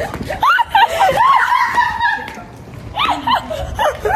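Young women laughing with high, excited voices, in two bouts with a short lull in the middle.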